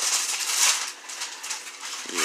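Wrapping paper crinkling and tearing as a present is unwrapped, loudest a little over half a second in.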